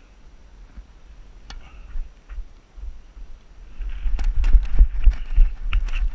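Footsteps and knocks of a player moving about a hard tennis court, heard through a head-mounted action camera. From about four seconds in they come with loud, low wind and movement buffeting on the microphone.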